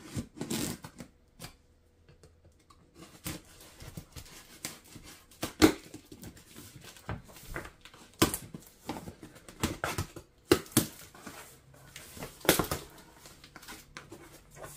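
A knife cutting through packing tape on a cardboard box, with irregular scrapes, taps and rustles of cardboard as the flaps are pulled open; the loudest snaps come about halfway through and near the end.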